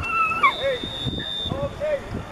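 High-pitched yells from spectators and players at a football game, with a steady whistle blast about a second long, typical of a referee signalling the ball ready for play.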